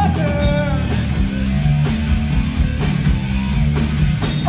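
Live rock band playing: electric guitar, bass guitar and drum kit, with a male singer's line in about the first second, then the band on its own.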